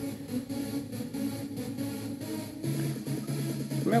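Music with a steady bass line and a faint beat playing from a Panasonic DT505 portable CD boombox.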